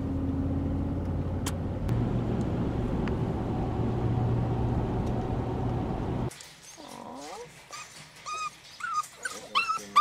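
Steady engine and road noise inside a moving car, which cuts off about six seconds in. Then English setter puppies whine and yip in short cries that rise and fall in pitch, coming more often near the end.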